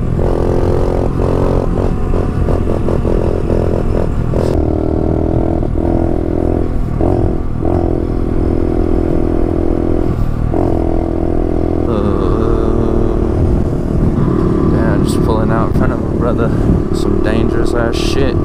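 Honda CRF70 pit bike's small four-stroke single-cylinder engine running under way, its note steady with several brief dips in the first ten seconds and climbing in pitch about twelve seconds in. Wind rumbles on the microphone.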